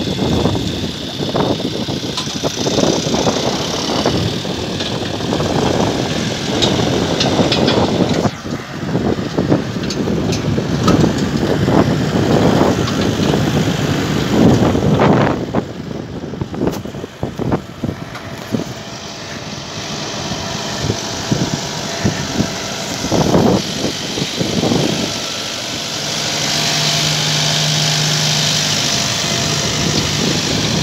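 Zetor Major CL 80 tractor's diesel engine running under load as it pulls a power harrow and seed drill through dry soil, with irregular gusty rumble from wind on the microphone. Near the end the engine's steady low hum comes through more clearly.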